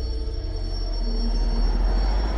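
Trailer sound-design drone: a deep, steady low rumble with a thin, steady high whine above it, growing slightly louder toward the end.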